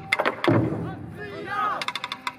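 Taiko drums struck hard with wooden sticks: a few sharp hits at the start and a deep booming hit about half a second in. In the second half, performers' shouts and sharp stick clicks.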